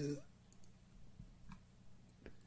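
A few faint clicks of a computer mouse, about half a second apart.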